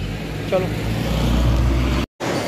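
A motor vehicle passing on the street: a low engine rumble with road noise, growing louder toward the end.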